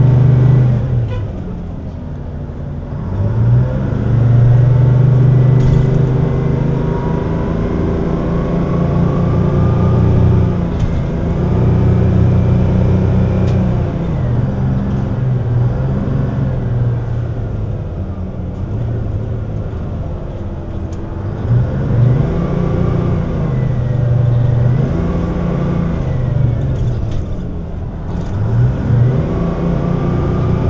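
City bus engine heard from the back seats inside the bus, running loud and steady, then rising and falling in pitch several times in the second half as the bus pulls away, shifts and slows.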